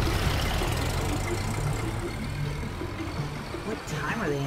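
Vintage car engine idling, a steady low rumble under a continuous hiss, from the sound design of a TV trailer.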